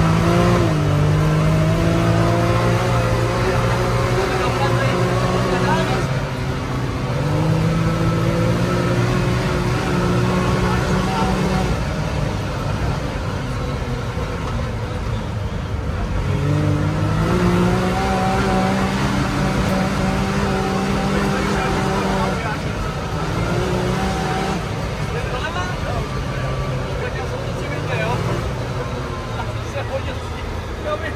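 Can-Am Maverick's Rotax V-twin engine under hard driving: its pitch climbs and holds near the start, drops about six seconds in, climbs again around seven seconds, falls off about twelve seconds in, rises again around seventeen seconds and eases off after twenty-two seconds.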